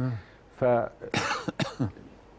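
Halting male speech, broken by a short cough about a second in.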